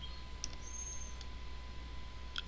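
Quiet background hum and hiss of the recording, with a faint single click about half a second in and a brief thin high whine just after it.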